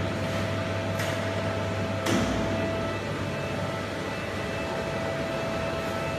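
Manual dry sandblasting cabinet running with a steady hum and a constant mid-pitched tone, with two short hissing bursts about one and two seconds in.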